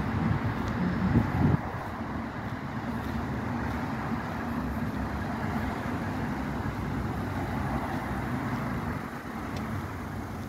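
Street traffic: cars driving on the road alongside, a steady traffic hum. A louder low rumble in the first second and a half cuts off suddenly.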